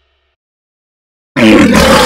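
A young child's scream, very loud, cutting in suddenly after silence about one and a half seconds in and lasting about a second.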